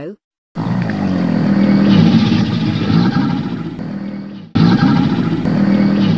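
Crocodile sound effect: a loud, low, rough growl that cuts off about four and a half seconds in and starts again at once.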